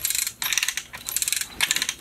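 Manual chain hoist being hand-chained: a rapid metallic clicking and rattling of chain links and pawl, in short bursts about every half second with each pull, as it slowly raises a heavy load.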